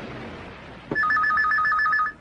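Telephone ringing: a rapid warbling two-tone ring starts suddenly about halfway through and lasts about a second.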